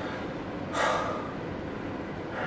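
A man's single heavy breath, a short gasp-like exhale about a second in.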